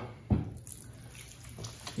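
A little water added from a plastic cup to bread dough being kneaded by hand, with soft wet sounds of the dough being worked. A single sharp knock comes about a third of a second in.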